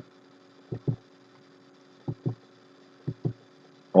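Soft paired thumps, each pair a fraction of a second apart, coming about once a second over a faint steady electrical hum.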